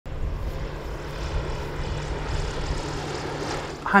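Aircraft engine running steadily: a deep rumble with a low hum and a hiss above it, cut off abruptly near the end.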